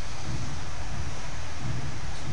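Steady hiss with a low rumble beneath it, unchanging throughout: the constant background noise of a home voice-over recording, with no other sound on top.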